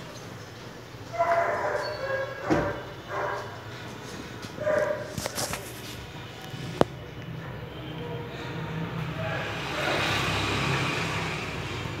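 Street ambience with a steady low hum of traffic. Several short, loud calls come in the first five seconds, a single sharp click follows near seven seconds, and a broad rush of noise swells around ten seconds.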